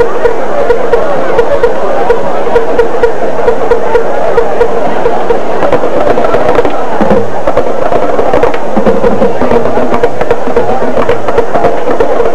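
High school marching band playing its halftime field show: brass over a drumline keeping a steady beat, loud throughout.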